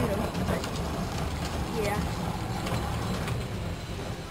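Steady low rumble of outdoor background noise on a phone microphone, with faint voices of onlookers.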